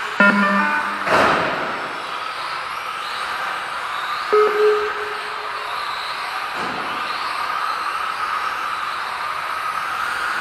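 Electric Tamiya TT-02 radio-controlled touring cars racing on a wooden hall floor: a steady whine of small electric motors and tyres. Short electronic beeps sound near the start and again about four seconds in, and there is a louder rush about a second in.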